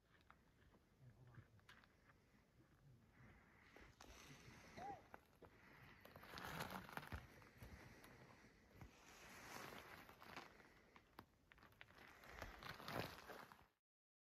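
Near silence: faint outdoor ambience, with soft swells of rustling noise and a few faint clicks.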